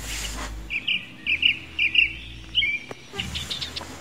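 A bird chirping: a quick run of short, high chirps, mostly in pairs, through the middle, then a few fainter ones near the end.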